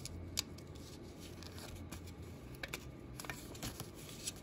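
Stiff paper Christmas card being handled and flipped open on a cloth-covered table: soft paper rustling with a few small, sharp clicks, one just after the start and a cluster in the second half.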